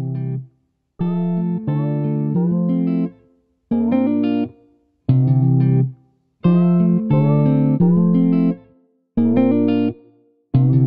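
Background music: a plucked-string melody played in short phrases, each cut off by a brief silence.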